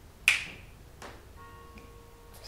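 A single sharp finger snap about a quarter of a second in, followed by a fainter click about a second in and a faint, steady held tone near the end.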